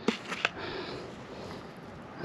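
A few short rustles and clicks from a foil-lined paper seed bag being handled and passed over, then faint steady outdoor background hiss.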